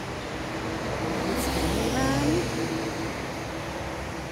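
A car passing on the street: road noise swells over the first two seconds and fades again, loudest about halfway through.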